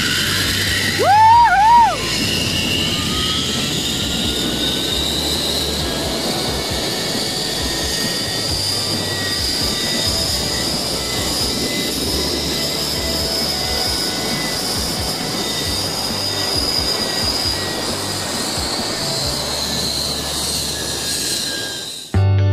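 Zipline trolley pulleys running along a steel cable, a steady rushing hiss with a thin whine that slowly rises in pitch as the ride picks up speed. About a second in there is a short, high, wavering whoop.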